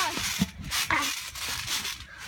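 Thumps and rustling of children bouncing and landing on a trampoline mat close to the microphone, with a short voice-like sound about a second in.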